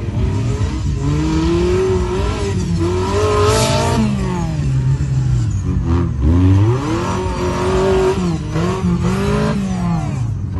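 Off-road buggy's engine revving hard as it drives through mud, its pitch climbing and falling again and again as the throttle is worked. A brief rushing hiss about three and a half seconds in.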